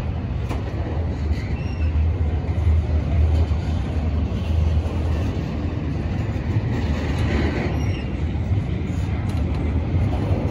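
Double-stack intermodal well cars loaded with containers rolling past close by: a steady, deep rumble of steel wheels on rail that runs without a break.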